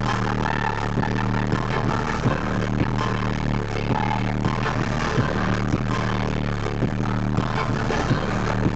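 Live pop concert music over an arena sound system during an instrumental dance break: a heavy, sustained deep bass line with a steady beat, loud and distorted in the recording.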